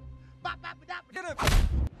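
A man being thrown to the ground in a film scene: a few short vocal sounds and a falling cry, then a loud, heavy body-slam impact about a second and a half in that lasts about half a second.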